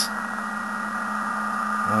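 Amateur radio receiver audio from a speaker: steady band hiss cut off above about 2 kHz, with faint steady tones of PSK digital-mode signals in it, picked up through the Pocket PC's built-in microphone.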